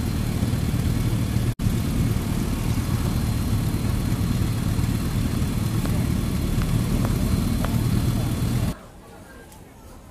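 Street traffic: motorcycle and car engines running with a steady low rumble. There is a momentary dropout about one and a half seconds in, and the sound cuts off near the end.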